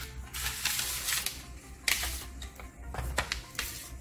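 Background music under the rustling and a few sharp clicks of a cardboard product box with a plastic window being opened by hand.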